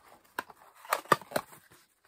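Small cardboard gift box being handled and slid open by hand: a few short scrapes and taps of card, the loudest about a second in.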